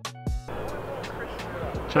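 A short musical sting with steady tones and a low thump in the first half-second, then steady open-air background noise of the cricket ground with faint ticks.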